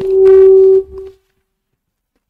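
A loud steady electronic tone lasting under a second, followed by a brief fainter repeat of the same pitch.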